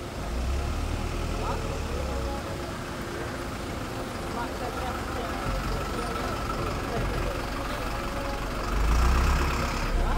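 A truck engine running close by, its low rumble swelling about half a second in and again near the end, under men talking in a crowd.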